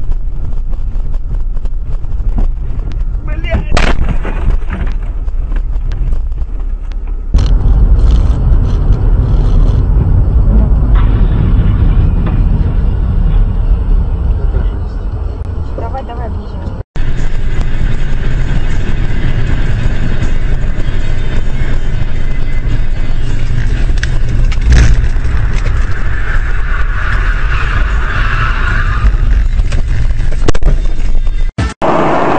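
Dashcam audio of vehicles driving: a loud, steady low rumble of engine and road noise heard from inside the cab, changing abruptly where one clip cuts to the next, with a few sharp knocks.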